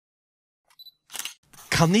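Camera sound effect: a short, high autofocus beep followed by a shutter click, after which a voice begins speaking.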